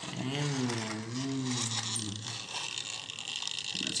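A plastic toy sports car pushed by hand over a tile floor, its wheels and gears whirring with a pitch that rises and falls as it goes back and forth, with light plastic rattling and ticking.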